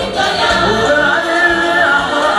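A choir singing a gospel song live, with long held notes.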